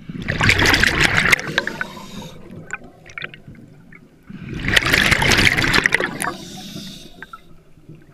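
Exhaled bubbles from a scuba regulator, heard underwater: two breaths' worth of bubbling, each two to three seconds long and about four seconds apart, with faint clicks between.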